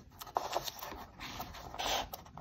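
Faint rustling and scraping of a folded newspaper strip being rolled tightly between the fingers into a coil, with a few light clicks and a brief louder rustle near the end.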